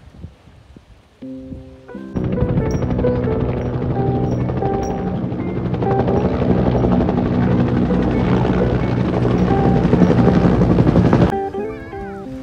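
Helicopters passing low overhead: a loud rotor thrum with a fast, even beat that starts abruptly about two seconds in and cuts off suddenly near the end, with guitar background music throughout.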